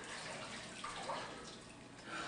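Faint splashing and dripping of water as a soaked person comes up out of the dunking water.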